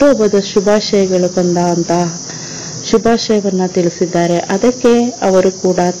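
Speech: a voice narrating in Kannada, pausing briefly a little after two seconds in, over a steady high-pitched hiss.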